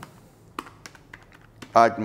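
A few faint, scattered light clicks and taps, like handling a small handheld device, followed by a man's voice starting near the end.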